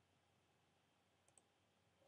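Near silence: room tone, with a faint quick double click of a computer pointer about one and a half seconds in.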